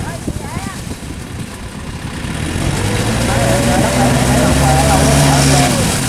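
Yanmar farm tractor's diesel engine running under load as the tractor churns through paddy mud on cage wheels. It grows steadily louder from about halfway through, then eases off just before the end.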